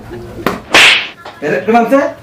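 A sharp click followed, less than a second in, by a quick loud swish, with a short burst of voice near the end.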